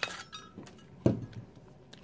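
A plastic lever-style oval paper punch and pink cardstock being handled: a few faint clicks, then one louder clack about a second in.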